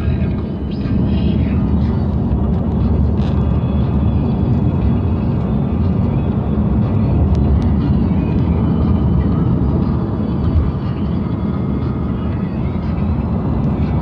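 Steady low rumble of road and engine noise heard inside a moving vehicle's cabin.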